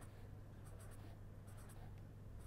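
Faint scratching of a pen on paper in a few short strokes as small circles are drawn.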